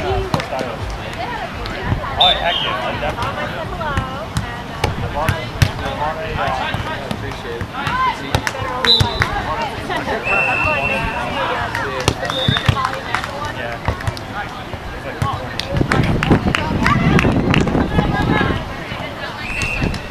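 Many voices of players and onlookers calling and chattering across sand volleyball courts, with repeated sharp smacks of volleyballs being hit. A few short high-pitched tones sound through it, and the voices grow louder near the end.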